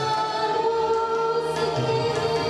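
Live song: a woman singing through a microphone over long held notes from an electronic keyboard, with tabla accompaniment.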